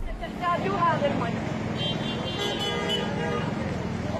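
Street ambience: people talking, then a vehicle horn sounds as one held tone for about a second and a half, over a steady low traffic hum.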